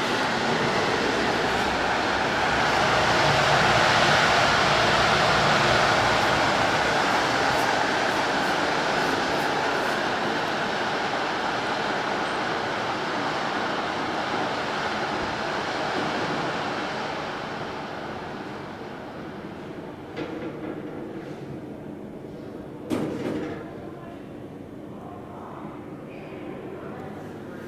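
Worn Thyssen inclined elevator running on its sloped track behind closed doors: a loud, rough rumbling that fades away in the second half, then two knocks near the end. The lift is in really bad condition.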